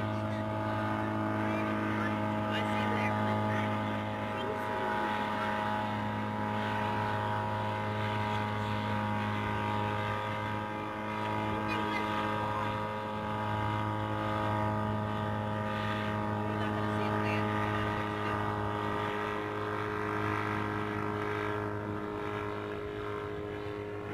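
Gyrocopter's engine and propeller droning steadily in flight, the sound swelling and easing slightly.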